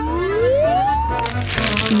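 A man's voice rising in one long, smooth "ooh" as he opens wide for a giant hamburger, followed by a noisy crunching bite into the burger in the second half, over background music.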